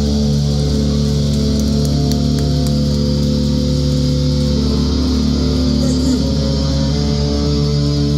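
Live rock band's electric guitars and bass holding long, ringing chords without drums, loud through the venue's PA.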